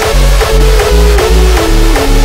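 Hardstyle track with a heavy kick drum on a steady fast beat and a synth melody stepping down in pitch.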